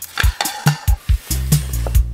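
Background music with a steady drum beat, about four to five hits a second, over a bass line.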